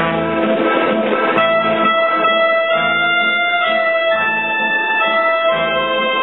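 Electronic keyboard playing an instrumental passage: held melody notes over a low bass note about every second and a half.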